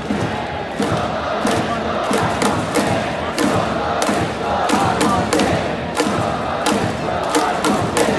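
Baseball stadium cheering section chanting in unison over music, with sharp claps or drum hits keeping a steady beat of about two a second.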